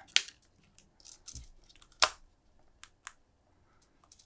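A few sharp plastic clicks and light handling noise as a Rode Wireless Go receiver is clipped onto a camera's hot shoe and its cable plugged into the mic jack. The sharpest click comes about two seconds in.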